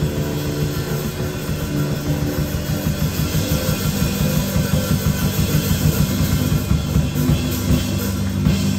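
Live band playing rock music on electric guitar, electric bass and drum kit, with a busy, driving drum rhythm.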